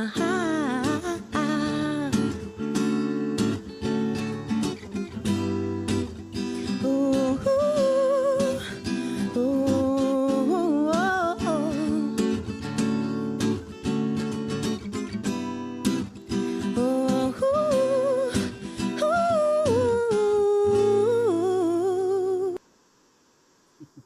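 A woman singing to her own acoustic guitar accompaniment, her voice wavering in pitch over the guitar. The song cuts off suddenly near the end.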